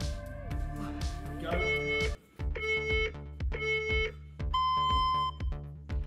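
Workout interval timer finishing its countdown: three short beeps about a second apart, then one longer, higher beep that marks the start of the work interval. Background music with a steady beat plays underneath.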